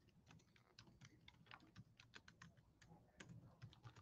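Faint typing on a computer keyboard: quick, irregular keystrokes, a few per second.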